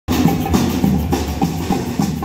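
Street drum troupe playing snare and bass drums together, beating out a steady rhythm of about three beats a second.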